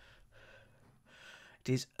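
A man's faint breaths in a pause between words, two soft puffs of air, with speech starting near the end.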